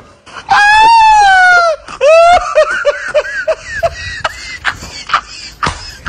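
A loud, high-pitched voice: one long wailing cry lasting over a second, a short rising cry, then a string of quick short notes like laughter.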